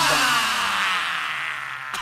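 Logo-reveal sound effect: a bright, shimmering hit that rings out and slowly fades away over about two seconds.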